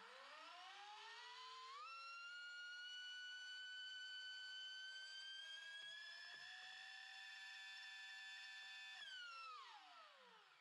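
Brushless motor of an 8S RC car spinning up with no pinion and no load, sounding a little funky: its whine climbs over about two seconds, creeps higher and holds, then winds down near the end. The gradual climb is the Perfect Pass launch-control delay set to maximum, easing in the throttle with full-throttle protection engaged.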